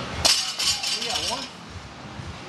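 A single sharp metallic clank about a quarter-second in, ringing on for about half a second: a steel barbell knocking against metal. Voices are faint under it.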